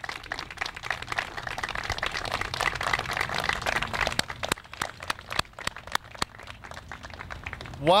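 Crowd applauding. The clapping swells to its fullest two to three seconds in, then thins to scattered single claps near the end.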